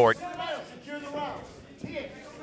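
Indistinct voices from around the cage, quieter than the commentary, with a short sharp knock near the end.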